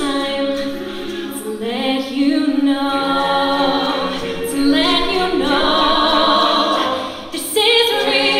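A cappella vocal group singing with no instruments: a female lead voice over the group's layered backing harmonies. The voices swell about halfway through, drop away for a moment near the end, and come back in.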